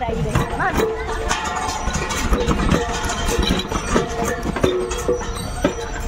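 Voices of people calling and chatting around an outdoor play area, with scattered short knocks like footsteps crunching on a gravel path.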